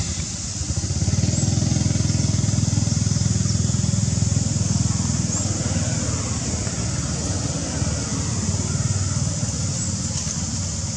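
A motor engine running, a steady low pulsing rumble that swells about a second in and eases a little after the halfway point.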